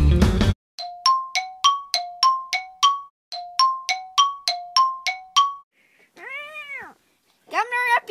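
A bright two-note chime, alternating a higher and a lower note in two runs of about eight notes, each note struck and ringing briefly. After the chime there is a short pitched sound that rises and falls, and a voice begins near the end.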